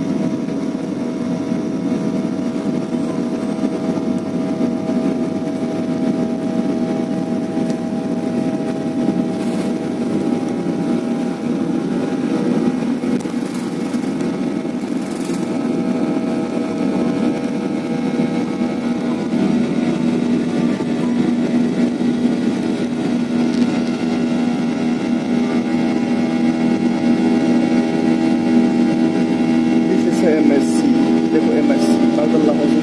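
Airliner engines at takeoff power, heard from inside the passenger cabin through the takeoff run and climb-out: a steady, loud noise with several steady humming tones, growing slightly louder toward the end.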